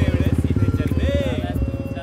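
Motorcycle engine running with a rapid, even pulsing beat as the bike pulls away, growing fainter toward the end.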